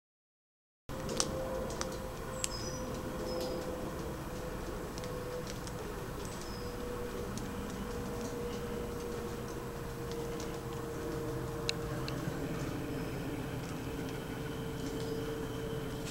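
Steady outdoor background noise with a drone holding one slowly falling tone, a few faint high chirps and occasional sharp clicks; it starts abruptly about a second in.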